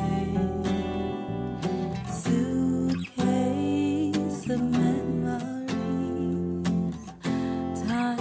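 Background music: a song with strummed acoustic guitar and a sung melody.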